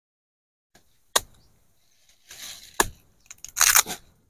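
Machete chopping cassava roots off the stem, the roots cracking and tearing free. Single sharp cracks about a second in and just before three seconds, then a loud quick run of cracks near the end.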